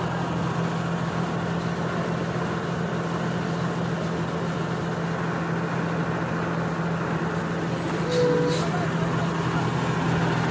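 Heavy diesel engines of a bus and a lorry running close by at low revs: a steady low hum with engine noise. About eight seconds in, a brief louder, higher-pitched sound rises over it.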